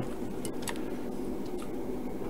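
Two faint sharp clicks about half a second in, a small power switch being flipped off, over steady low background noise.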